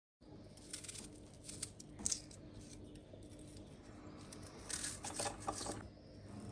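Faint kitchen handling noises: a few light clicks, taps and rustles, sharpest about two seconds in and again near the end, over a faint steady hum.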